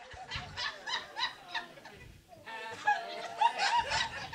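Small audience laughing after a punchline, several voices in quick rhythmic bursts; the laughter dips briefly about halfway through, then picks up again.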